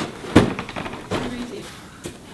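A large cardboard box thumps down once about half a second in, followed by a few lighter knocks and cardboard handling sounds.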